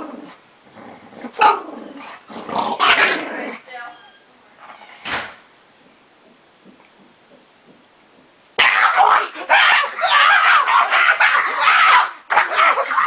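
A pug growling and barking while she is held down and her legs are grabbed in play-wrestling. Short outbursts at first, a quiet spell in the middle, then loud continuous growling for the last few seconds as she thrashes free.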